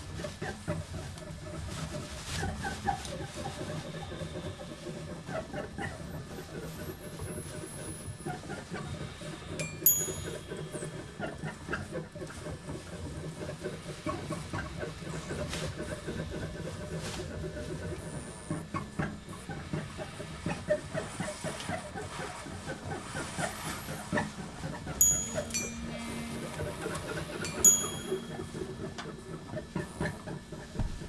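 Free-improvised noise music from a small band: a steady low drone from electric bass and guitars under a dense crinkling and crackling of a plastic bag being scrunched by hand. Sharp struck clicks that ring briefly come about ten seconds in (the loudest) and twice more near the end, and thin high tones slide downward twice.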